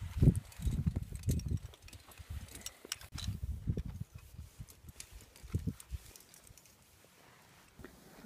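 Irregular low thumps and scuffs, with faint clicks, from climbing rope and carabiners being handled close to the microphone, dying away about six and a half seconds in.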